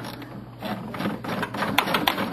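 Ratchet wrench clicking in quick runs as a bolt is worked loose or tight, the clicks growing denser about half a second in.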